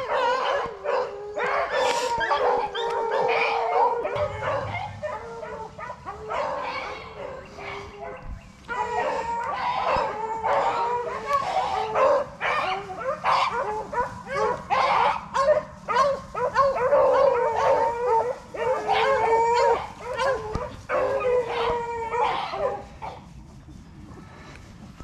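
A pack of rabbit hounds baying and howling together, many voices overlapping, as they run a rabbit's track; the chorus thins briefly about eight seconds in and tails off near the end.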